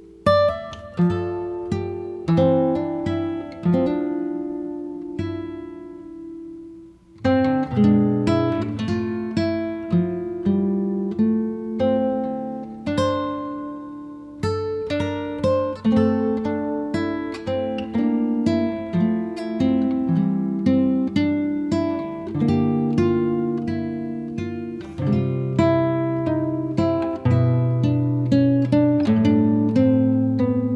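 Acoustic guitar music: plucked notes and chords, each ringing out and fading, with a brief break about seven seconds in before the playing grows busier.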